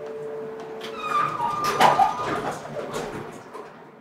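The last chord of a nylon-string classical guitar rings and fades, then from about a second in the elevator's doors slide shut with squeaking and clattering, the sound dying away near the end.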